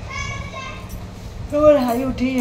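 A woman yawning aloud, one long high-pitched 'aah'. About a second and a half in, she starts talking.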